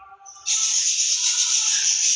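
A loud, steady hiss that starts about half a second in and holds for about a second and a half.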